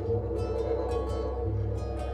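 Layered music from a live looping pedal: a repeating plucked-string pattern over held, sustained tones, with a low bass that swells twice.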